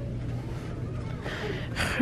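Steady low hum of shop background noise, then a quick, sharp intake of breath near the end.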